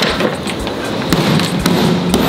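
Irregular thumps and taps from a hard-shell suitcase being handled.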